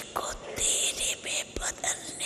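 An elderly woman speaking into a microphone in a soft, breathy, near-whispered voice: several short phrases heavy with hissing consonants.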